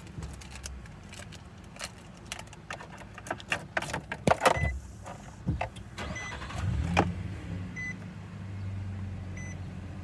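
Clicks and knocks of controls being handled inside a car, then from about six seconds in a steady low hum as the car's air conditioning comes on, with a few faint short beeps.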